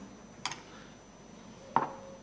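A pause in a man's speech: quiet room tone with a short faint click about half a second in and another brief sound just before the end.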